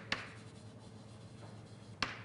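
Writing on a board: a sharp tap as the writing tool meets the board about a tenth of a second in, then faint scratching strokes as a formula is written out.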